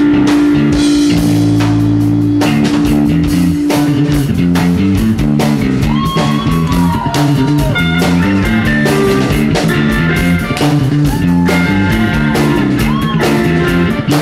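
A live punk-funk band playing an instrumental stretch: electric guitar, bass and drum kit. High bending notes come in about six seconds in and again near the end.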